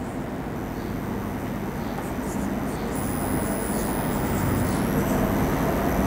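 A steady rumbling noise that grows gradually louder, with faint, steady, high-pitched whine tones above it. A marker writes faintly on a whiteboard.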